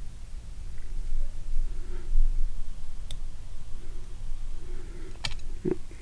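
Low steady hum with faint handling sounds at a fly-tying vise; one light click about halfway through and two sharper clicks near the end, as tools are picked up.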